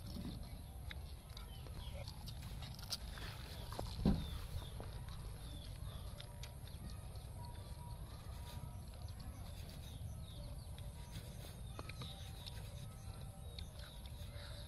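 Chickens clucking faintly in the background over a low steady rumble, with a single thump about four seconds in.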